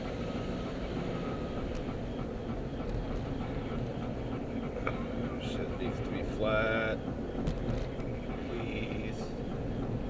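Steady road and engine noise inside a moving car's cabin, picked up by a camera's weak built-in microphone. A short pitched sound comes about six and a half seconds in.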